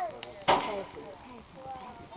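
A single sharp crack or bang about half a second in, with people's voices calling around it.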